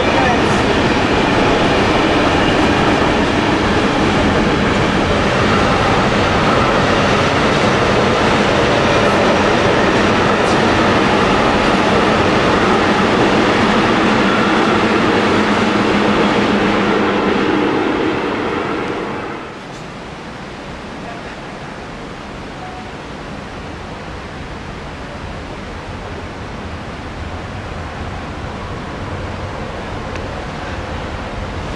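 Freight train wagons rolling past on the track with a loud, steady rush. The sound drops away quickly about 18 to 19 seconds in as the end of the train goes by, leaving a quieter steady rushing noise.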